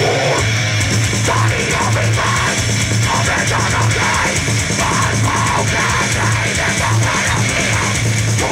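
Heavy metal band playing loud live: distorted electric guitar, bass guitar and drum kit, with a low riff that comes in short repeated blocks.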